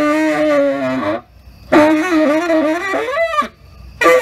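Tenor saxophone in free improvisation: a phrase with a wavering pitch, a short pause, then a second phrase that ends in a quick upward glide into high overblown notes, followed by a breath pause.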